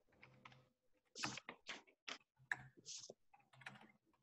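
Faint, irregular clicks and rustles, several a second, coming over a video-call line.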